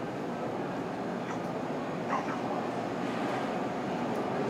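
Steady hum of a hotel hallway's ventilation, with a brief faint squeak about two seconds in.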